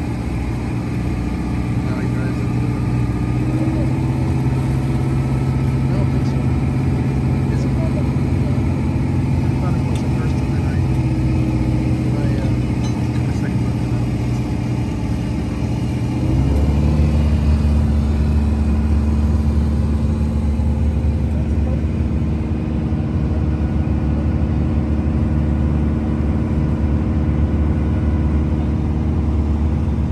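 Engine running with a steady drone. About halfway through, its note drops suddenly to a lower, slightly louder drone.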